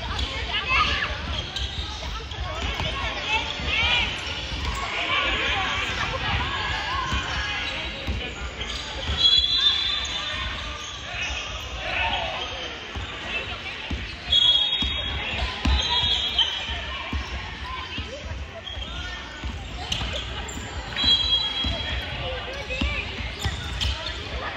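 A basketball bouncing on a hardwood court in a sports hall, repeatedly, with several short high shoe squeaks and children's voices calling out during play.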